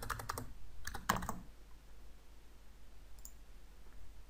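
Computer keyboard keystrokes: two quick runs of key taps in the first second and a half, as a number is retyped in the code, then a single faint click about three seconds in.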